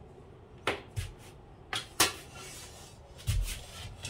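Handling noises: several sharp clicks and knocks, the loudest about two seconds in, and a dull thump near the end.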